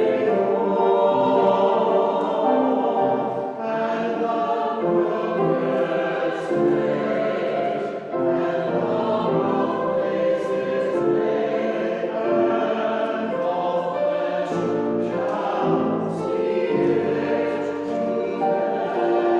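Small church choir of women and men singing together in sustained phrases, with short breaks between phrases about three and a half and eight seconds in.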